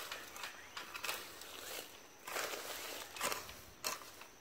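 Hands scraping and rustling in loose garden soil while pulling weeds, in several short bursts with a sharper scrape near the end.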